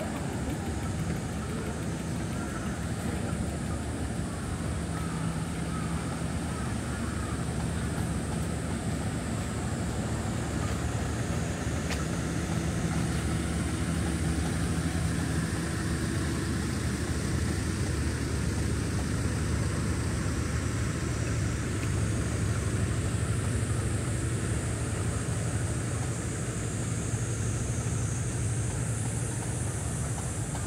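Steady outdoor ambience dominated by a low idling vehicle engine hum, with a high steady hiss over it that grows a little louder near the end.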